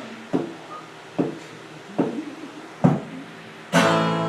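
Four sharp percussive knocks, evenly spaced a little under a second apart as a four-beat lead-in, then acoustic guitar strumming starts loudly just before the end.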